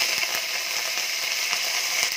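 Fresh curry leaves and whole spices (bay leaf, fennel, dried red chillies) sizzling in hot fat in a stainless steel kadai, a steady hiss.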